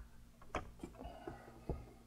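About five faint, irregular clicks and taps, two of them a little louder, over a low steady hum.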